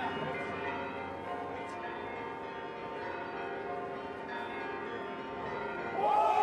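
Church bells pealing: many overlapping ringing tones held evenly, without pause.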